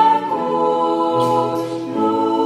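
Women's voices singing in harmony through microphones, with a girls' choir behind them, holding long notes.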